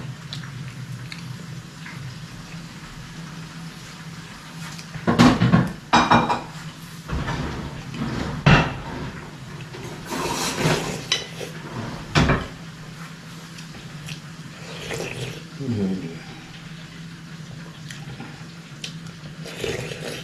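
A metal spoon clinking and scraping against a metal pot, with wet slurping as soup is sipped from the spoon; a few loud separate clinks and sips come through the middle of the stretch.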